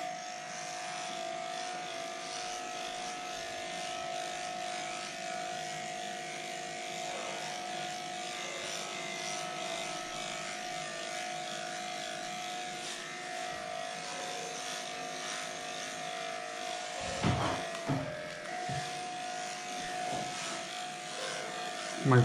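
Cordless dog clipper with a comb attachment running with a steady hum as it cuts through a matted coat, with a few brief bumps about seventeen seconds in.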